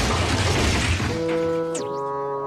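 Cartoon crash sound effect: a long, noisy smash that fades out about halfway through, as held orchestral notes from the cartoon score come in, with a quick falling slide near the end.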